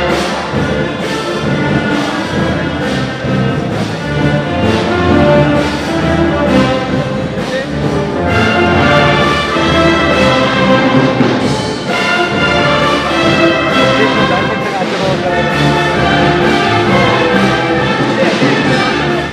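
Orchestral band music with brass instruments to the fore, playing steadily throughout.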